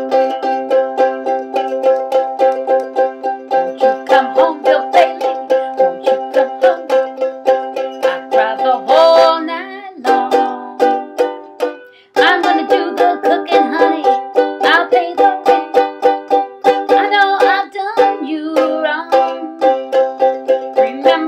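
Ukulele strummed in a quick, even rhythm, playing chords as an instrumental passage. The strumming stops for a moment about twelve seconds in, then picks up again.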